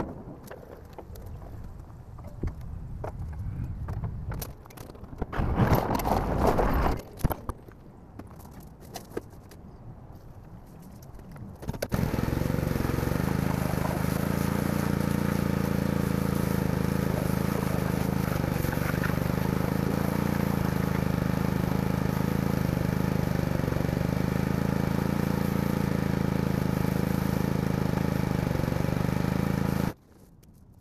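Pressure washer running at a steady pitch, its high-pressure spray hissing against a steel trailer frame to rinse off degreaser. Before it there are several seconds of irregular knocks and scraping, loudest about five to seven seconds in.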